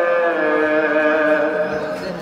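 Noha, a Shia mourning lament, sung by a male reciter through a microphone: one long held note that dips slightly in pitch and fades near the end.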